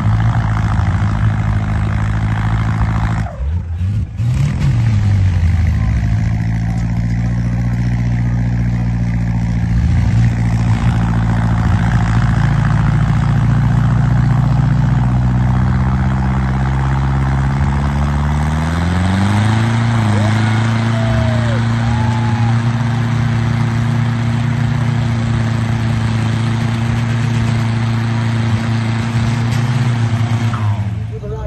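Isuzu cab-over wrecker's engine running hard under load as its wheels spin and dig into deep sand. The revs dip briefly a few seconds in, then climb about two-thirds of the way through and hold higher.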